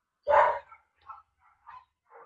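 A dog barks once, sharply, about a quarter-second in, heard over a video-call audio link. A few faint short sounds follow.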